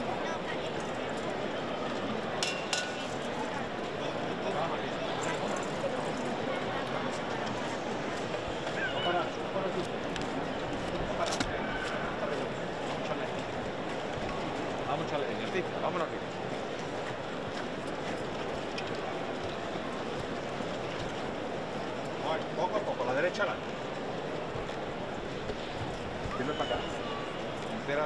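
Steady hubbub of a large crowd's indistinct voices, with a few sharp clicks here and there.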